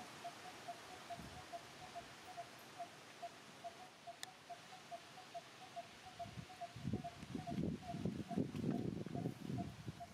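A bird's short note repeating evenly, about four times a second. From about seven seconds in, louder irregular rustling and scuffing as monkeys move over dry leaves and soil.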